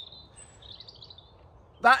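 Faint songbird chirping and twittering over a quiet outdoor background, and a man's voice starting again near the end.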